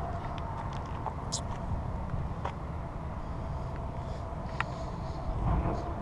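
Steady low outdoor background rumble with a few faint, scattered clicks and taps.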